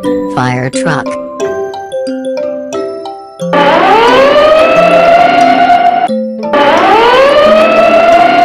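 Fire truck siren sound effect: two long wails, each rising in pitch and then holding steady, over light background music.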